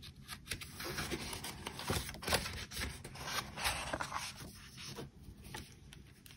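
Loose sheets of printed paper being lifted, turned over and slid across a tabletop: a series of short papery rustles and scrapes.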